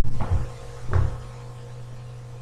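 Two short, dull knocks in the first second, then a steady low electrical hum.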